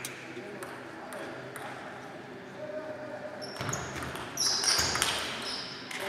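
Table tennis ball clicking in a string of quick, sharp pings during the second half, over a low murmur of voices in a large hall.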